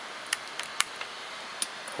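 A few small, sharp clicks as a USB cable is plugged into the top port of a Sony Ericsson Xperia X10 phone and the phone is handled, over a faint steady hiss.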